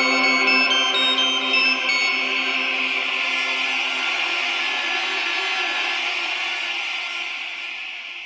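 Beatless electronic music: held synth chords under a quick run of short high synth notes that stops about two seconds in. A hissing noise wash takes over above the chords, and it all fades out toward the end.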